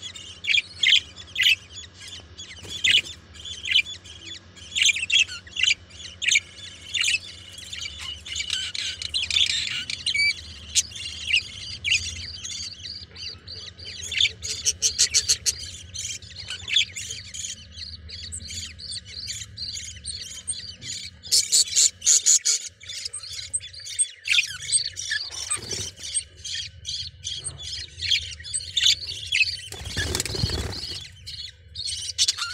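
Budgerigars chirping and squawking in short, high, rapid calls, with two dense runs of quick chatter, one near the middle and one about two-thirds through.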